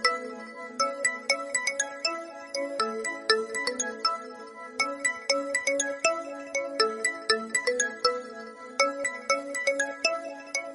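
Samsung Galaxy S10+ ringtone playing for an incoming call: a melodic tune of short, quick notes that runs without a break.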